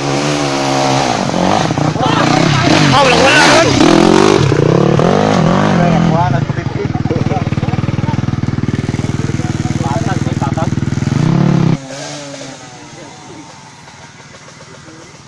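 Dirt bike engine revving hard, its pitch rising and falling for the first six seconds as it climbs a steep dirt slope. It then runs at a steady, pulsing speed close by and cuts off abruptly near the end.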